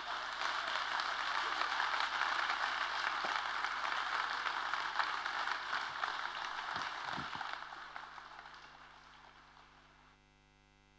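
Audience applauding: many hands clapping. It swells in the first second, holds steady, then dies away over the last few seconds.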